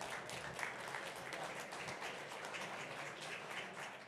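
A small audience applauding steadily, many scattered hand claps at once.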